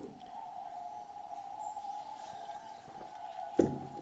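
A faint, steady, high-pitched whine: a single tone held at one pitch under quiet room tone, with a brief low sound near the end.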